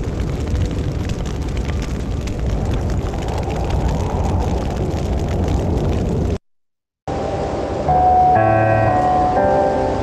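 Grass fire roaring with dense crackling, which cuts off abruptly about six seconds in. After a short silence, music with several held notes begins.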